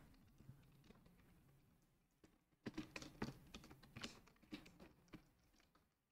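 Faint computer keyboard typing: a quick run of keystrokes that starts a little before the middle and stops about a second before the end.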